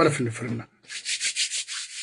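A run of quick, rough rubbing strokes starting about a second in: a hand brushing against the phone and its microphone.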